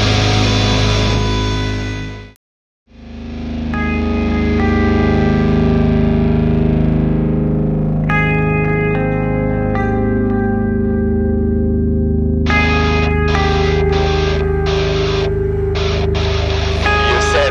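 Deathcore/djent band recording: a heavy passage fades out and stops about two seconds in. After a brief silence a new track begins with an echoing, effects-laden guitar playing sustained, layered notes that build as more notes come in.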